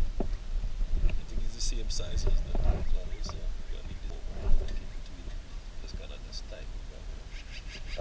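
Steel exhaust pipe, clamps and hand tools handled on asphalt: scattered metal clinks and scrapes, with one sharper clank about four and a half seconds in, over a low steady rumble.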